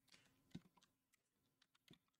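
Near silence with a few faint computer keyboard keystrokes, the clearest about half a second in and another just before the end.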